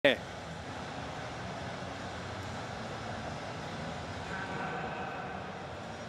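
Steady background hum of a large, almost empty athletics stadium, with faint distant voices carrying through it. A brief sharp sound opens it.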